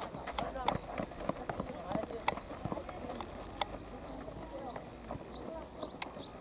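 Soccer players' calls and shouts across the pitch, mixed with several sharp knocks of a soccer ball being kicked and the patter of running feet on a hard field.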